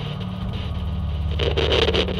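Intro sound design: a steady low, pulsing drone, with a noisy whoosh swelling up about one and a half seconds in.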